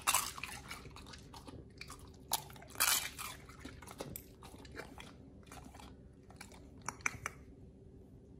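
A pit bull chewing raw beef tongue: irregular wet chomps and crunches, the loudest near the start and about three seconds in, dying away near the end.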